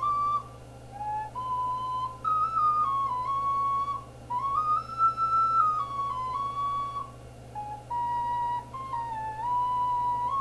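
Focalink Soprano C plastic ocarina played solo: a slow melody of single held notes in its upper-middle range, stepping up and down and sometimes sliding from one note to the next, with short breaths between phrases.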